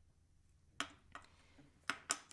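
A few light clicks of small hard objects being set down on a glass sheet on a table, the sharpest near the end.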